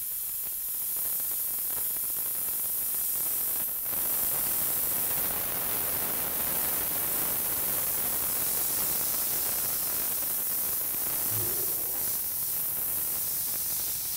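Airbrush spraying paint onto t-shirt fabric: a steady hiss of air and paint, with a brief dip about four seconds in.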